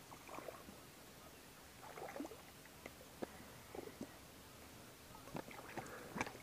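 Faint, scattered small splashes and ticks as a hooked brown bullhead is reeled to the shoreline and thrashes at the surface.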